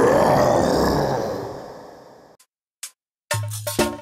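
A cartoon T-Rex roar sound effect, played over the end of a song's music, fading out over about two seconds. After a short silence, upbeat music with a drum beat starts near the end.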